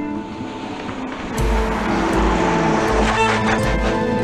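Dramatic background score with long held notes. About a second and a half in, deep low pulses start repeating under it, over a rising wash of noise.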